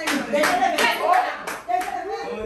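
Scattered hand claps, a few sharp claps at uneven intervals, mixed with the excited voices of a group of people.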